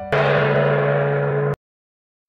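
A single loud gong stroke, ringing with many overtones, cut off abruptly after about a second and a half.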